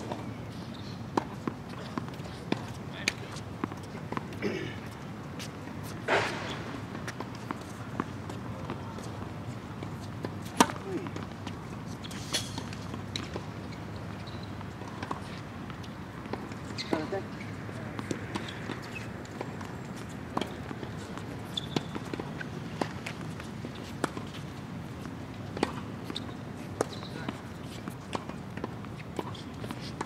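Tennis balls struck by rackets and bouncing on a hard court: short, sharp pops at irregular intervals over steady low background noise, with faint voices.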